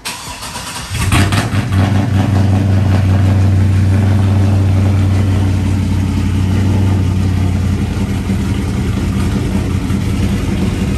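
LS-swapped V8 in a Chevrolet OBS pickup being started: the starter cranks for about a second, the engine catches with a burst, then runs at a loud high idle. About eight seconds in the idle drops and settles lower.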